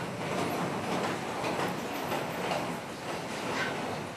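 Steady room noise of an audience in a hall: a low murmur and rustling, with a few faint knocks.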